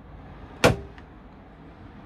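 A single sharp click from a motorhome kitchen drawer's catch as the drawer is handled, with a brief faint ring after it.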